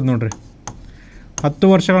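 Marker writing on a whiteboard: a few short, sharp taps and a faint scratch in the quiet gap, between stretches of a man's speech.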